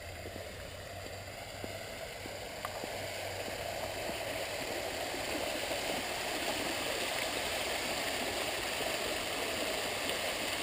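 Fountain water splashing as it spills over the rim of a raised stone basin into the pool below: a steady rush that grows gradually louder.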